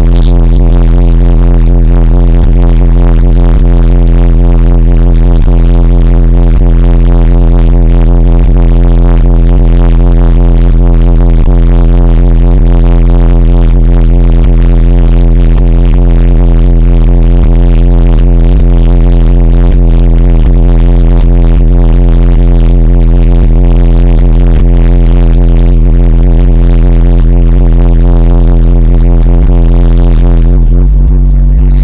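Car audio subwoofer system playing one steady, very loud low bass tone without a break, so loud that the microphone overloads into a buzzy, distorted drone.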